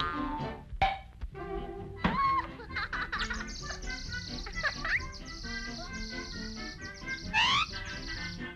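Orchestral cartoon score with comic sound effects: a sharp click about a second in, and high whistle-like slides and trills over the music, with a quick rising glide near the end.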